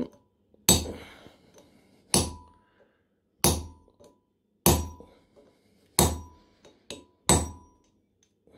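Six evenly spaced hammer blows on a steel rivet set resting on a rivet over an anvil, about one every second and a quarter, each with a short metallic ring. The blows are peening the rivet, a cut-down nail, into a head.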